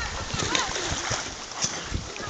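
Small waves slapping and lapping against a floating dock, with a child's high voice calling briefly in the distance about half a second in.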